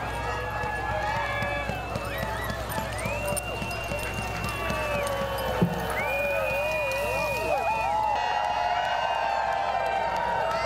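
A team of sled dogs yelping and howling together in many overlapping long, wavering calls: the din of a harnessed team waiting at the start line, eager to run.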